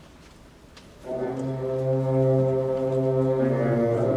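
School concert band entering together about a second in and holding a sustained chord, with some inner notes moving near the end.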